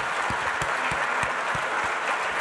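Large audience applauding steadily, with separate nearer claps standing out every few tenths of a second.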